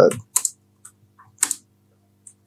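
Typing on a computer keyboard: a handful of separate keystrokes spread out, the loudest about a second and a half in.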